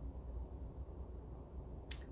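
Quiet room tone with a steady low hum, broken near the end by one short, sharp sound just before speech starts again.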